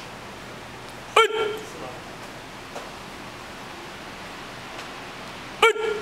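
Two short, sharp kiai shouts from karate students performing a kata, one about a second in and another near the end.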